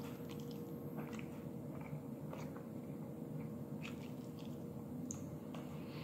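Quiet close-up chewing of a mouthful of scrambled eggs, with faint scattered small mouth and fork clicks over a steady low hum.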